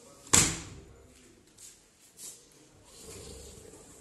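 A PVC sliding window sash banging once against its frame as it is slid along its track, a sharp knock about a third of a second in. Two fainter knocks follow.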